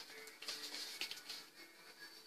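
A cardboard LP record jacket being handled and turned over, with a few light rustles and taps about half a second to a second in, over faint background music with a few held notes.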